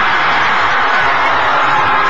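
Studio audience cheering and applauding in a steady, loud wash, with music playing along, in celebration of a game-show contestant winning the million-dollar top prize.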